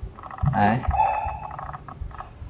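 Mostly a man's voice: one short spoken word, then a held hum, with a few soft low knocks as the steel watch is handled close to the microphone.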